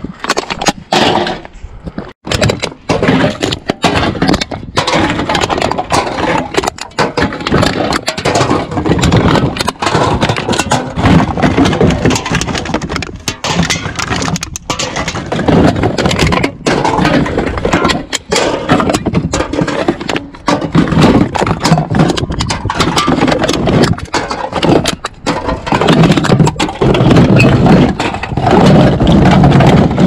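Aluminium drink cans, plastic bottles and cartons clattering and scraping against each other and a plastic recycling bin as a gloved hand rummages through them: a constant, irregular stream of knocks and rattles.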